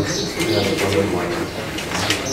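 Several people talking quietly at once around a table, with sheets of paper being handled and rustling.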